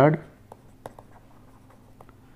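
Stylus writing on a tablet screen: a handwritten word, heard as a few faint short taps and scratches at irregular moments.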